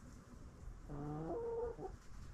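A backyard chicken gives a single drawn-out call about a second long that steps up in pitch partway through.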